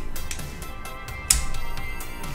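A sharp single click a little over a second in as a small screwdriver slips out of a tiny screw head and knocks against the plastic model part, over steady background music.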